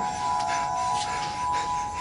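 Background music: a soft, sustained chord of steady held tones.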